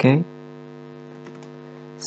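Steady electrical mains hum picked up in the recording, a stack of low tones held level, with a few faint clicks of keyboard typing.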